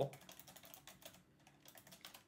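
Faint typing on a computer keyboard: a run of quick key clicks as a word is typed in.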